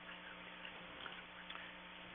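Faint room tone: a steady electrical hum and hiss, with a few soft ticks.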